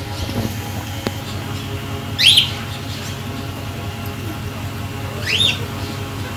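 A bird calling twice, about three seconds apart: two short, high, sweeping chirps over a steady low hum.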